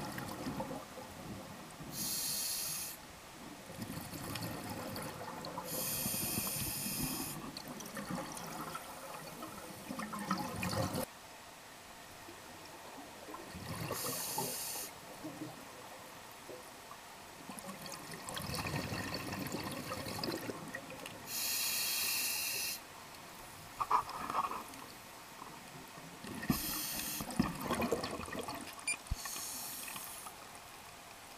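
Scuba diver breathing through a regulator underwater. About five breaths, each a short hiss of inhalation through the demand valve, with the low bubbling rumble of exhaled air between them.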